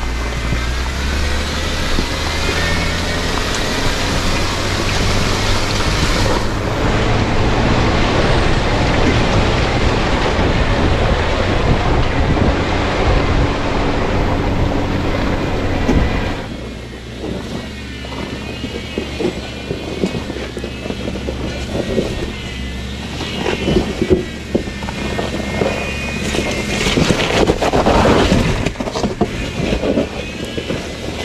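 Jeep Wrangler Rubicon driving up a wet, rocky trail: engine and tyre noise under loud wind rush on a camera mounted outside the vehicle. About sixteen seconds in, the sound drops away to a quieter mix.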